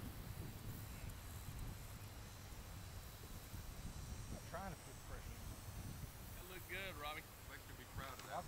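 Wind rumbling on the microphone, with distant voices talking briefly around the middle and again near the end.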